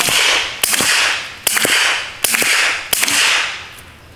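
Five suppressed 9mm pistol shots from an FN 509 fitted with a JK Armament 155LT suppressor (a Form 1 solvent trap), firing 147-grain subsonic ammunition. The shots come about three-quarters of a second apart. Each is a sharp report followed by a fading echo.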